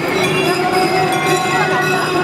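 Street-procession crowd noise: many voices chattering over a few steady, sustained tones.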